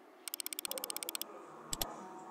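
A rapid, very even run of sharp ticks, about twenty in a second and lasting about a second, then a sharp double click near the end.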